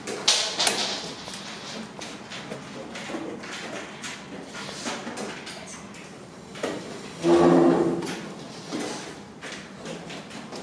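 Wooden draughts pieces clicking on the board and taps on a game clock during a fast blitz game, with a sharp clatter just after the start. About seven seconds in, a short voice sound rises over the background.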